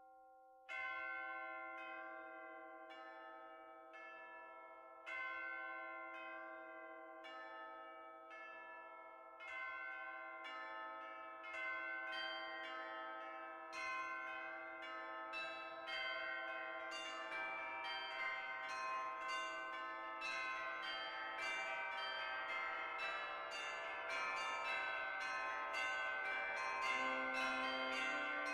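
Bells struck one at a time, the first about a second in, each ringing on. The strikes come every few seconds at first, then faster and faster, overlapping into a dense, building ring of many pitches by the end.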